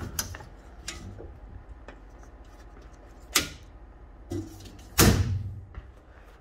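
Electrical breaker panel being worked by hand: the metal panel door's latch and door clicking open, then circuit breakers being switched back on. There are a few light clicks, a sharp snap a little past halfway, and a louder, heavier thud about five seconds in.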